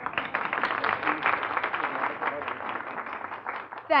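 An audience applauding: dense clapping that thins out near the end.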